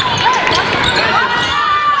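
Live basketball game sound in a gym: a ball bouncing on the hardwood floor and sneakers squeaking as players move, with voices in the gym.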